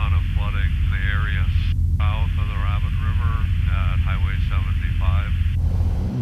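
Light airplane's engine droning steadily as heard inside the cockpit, with a thin, narrow-sounding voice over the radio or intercom talking above it.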